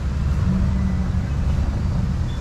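Steady low rumble of a vehicle engine running, with a faint hum rising out of it briefly about half a second in.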